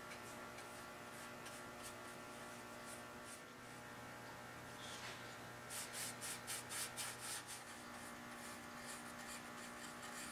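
Faint steady electrical hum, with a quick run of soft rubbing strokes lasting about two seconds from near the middle: a brush and rag applying walnut dye stain to a sanded wooden tabletop.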